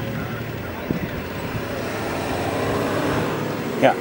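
Steady engine noise of an idling vehicle, without change.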